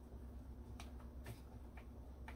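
Faint clicks of a plastic 6+2-pin PCIe power connector and its braided cable being worked onto a graphics card, three light ticks about half a second apart over a low steady hum.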